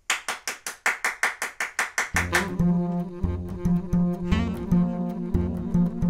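A quick, even run of short clicks for about two seconds, then an upright double bass and two tenor saxophones start playing a jazz tune, the bass line strong and steady underneath.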